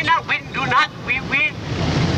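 A man's voice amplified through a handheld megaphone, in short shouted phrases for about the first second and a half, over a steady rumble of street traffic and wind on the microphone.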